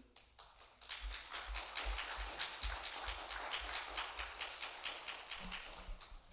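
Small audience clapping by hand, starting about a second in and dying away near the end.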